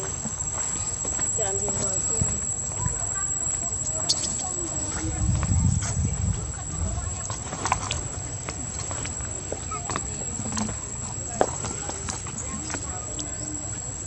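Outdoor ambience with indistinct voices, scattered light clicks and knocks, and a steady thin high-pitched whine.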